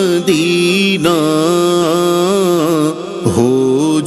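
A man's voice singing an Urdu naat without instruments, holding long, gently wavering notes, with a brief break about three seconds in.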